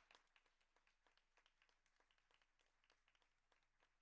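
Very faint clapping from a small group of people, many quick irregular claps.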